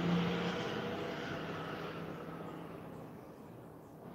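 Noise of a passing vehicle fading steadily away, with a low steady hum that stops about half a second in.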